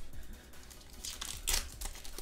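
Foil booster-pack wrapper of the Digimon Card Game crinkling in the hands as it is torn open, with a few sharp crackles in the second half, the loudest about one and a half seconds in.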